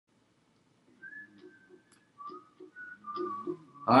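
A person whistling a few short notes, about four pitches held in turn, faint, with a few light clicks among them.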